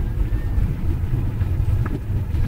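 Volkswagen car's engine running under throttle, heard from inside the cabin as a steady low rumble with road noise, with a faint tick near the end as the boy reaches for the gear lever to shift into third.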